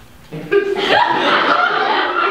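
Several people laughing together, starting about half a second in, with some talk mixed in.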